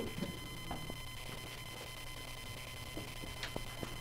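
Room tone with a steady low electrical hum and faint, steady high-pitched whines. A few soft ticks come through it.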